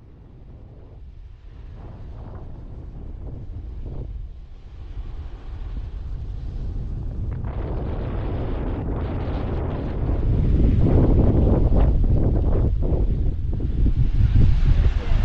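Wind buffeting the microphone: a low, gusty rumble that builds steadily and is loudest in the last few seconds.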